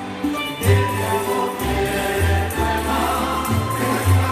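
A folk ensemble of strummed guitars and small mandolin-like lutes playing a song while a group of voices sings along, with bass notes changing every half second or so.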